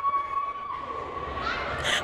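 A woman's long, steady, high-pitched scream that breaks off about two-thirds of a second in, leaving faint background noise.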